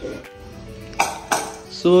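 Dishes clinking twice, about a second in and again a moment later, over quiet background music.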